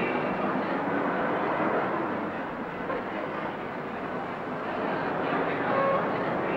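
Steady background noise, an even hiss-like hum with no distinct events, dipping slightly in the middle.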